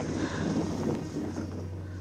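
Wind on the microphone over outdoor noise, with a low steady hum coming in about halfway through.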